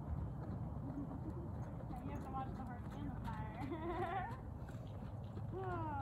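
A mustang whinnies with a quavering call about three seconds in, and again near the end, over hoofbeats on dirt.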